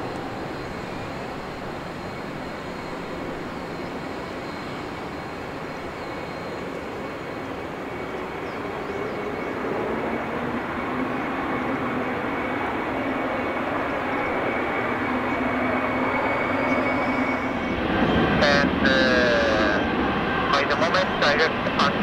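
Boeing 777-300ER's twin GE90 turbofans at taxi power: a steady jet rumble with a high whine, growing louder as the airliner taxis in close. Near the end, a cluster of sharp clicks and warbling tones joins it.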